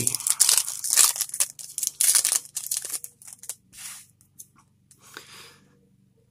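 Wrapper of a 2019 Topps Opening Day baseball card pack being torn open and crinkled by hand: a dense run of rips and crackles over the first three seconds or so, then only a few faint rustles.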